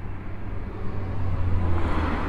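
A car going by on the road: a low engine hum and tyre noise that grow louder toward the end.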